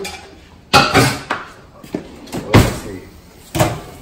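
Three sharp knocks of kitchenware being handled: the first a little under a second in, the loudest just over halfway, and the last near the end.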